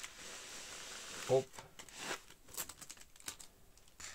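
A white packing-foam sleeve scraping as it is slid off an aluminium-foil-wrapped tube. It makes a steady rustle for about the first second, then scattered foil crinkles and light taps.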